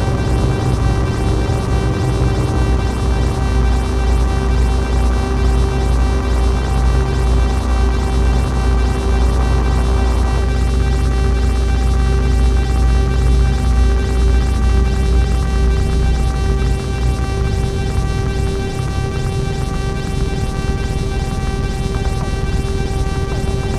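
Improvised electronic noise music from hardware analog synthesizers, run through reverb and delay: a dense sustained drone of many steady tones over heavy bass. The upper tones thin out about ten seconds in, and the deep bass drops away about 17 seconds in.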